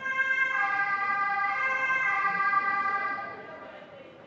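Two-tone siren of an emergency vehicle, alternating between a lower and a higher pitch. It comes in suddenly and fades away over the last second or so.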